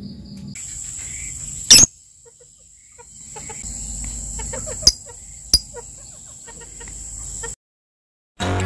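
Outdoor ambience with a steady high-pitched insect drone and bird calls: one loud sharp call just under two seconds in, then short chirps with two sharp calls around five seconds in. The sound cuts off shortly before the end.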